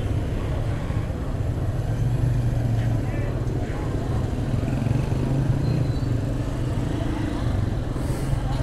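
Suzuki GS motorcycle engine running steadily at low revs through its exhaust, which has been modified to sound louder.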